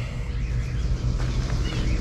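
Outdoor garden ambience: a steady low rumble with a few faint bird chirps.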